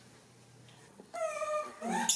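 Baby macaque calling: one high, drawn-out cry that falls slightly in pitch, starting about a second in, then a short rising squeal near the end.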